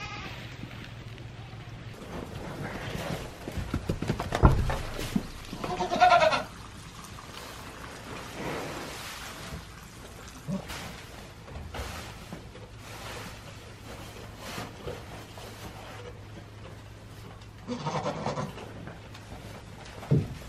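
Goats bleating in a barn, one wavering call about six seconds in and another near the end, with rustling and a heavy thump as hay bales are carried in and dropped on the floor.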